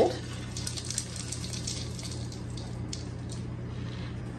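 Toasted, chopped pecans sliding off a pan into a mixing bowl: a soft, faint rustling patter, over a steady low hum.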